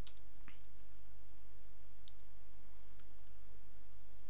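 Computer keyboard keys clicking: a handful of scattered, irregular keystrokes as a line of code is typed, over a steady low hum.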